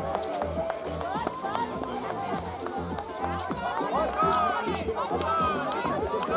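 Several spectators shouting and cheering encouragement at racing cross-country skiers, many voices overlapping in rising and falling calls.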